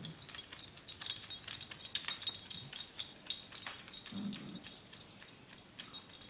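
Small terrier digging and turning around in her fabric dog bed, the metal tags on her collar jingling in quick irregular clinks with each move. One short low vocal sound comes about four seconds in.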